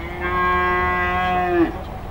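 A single long moo from cattle, held at a steady pitch for about a second and a half before dropping off.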